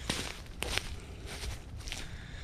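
Footsteps through dry leaf litter, with a few sharp crackles among the rustling.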